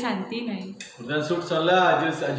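People talking, with a man's voice taking over about halfway through, and a couple of short sharp clinks in the middle.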